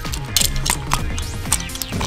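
Small plastic clicks and snaps from a Transformers One Step Changer toy's parts as its limbs and head are pushed into place in robot mode, several light clicks over about a second and a half, over steady background music.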